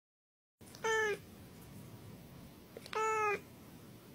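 A cat meowing twice: two short meows about two seconds apart, over a faint hiss.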